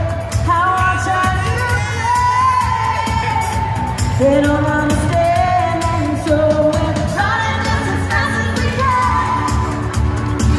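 Live pop song from a 1980s teen-pop singer's set: a woman's voice singing long held notes over a full band with a steady drum beat, heard from the audience in a large arena.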